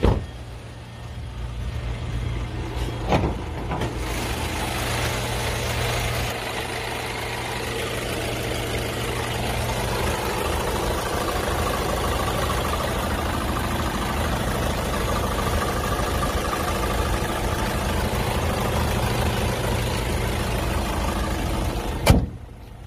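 2016 Hyundai Sonata's engine idling steadily, with a single knock about three seconds in.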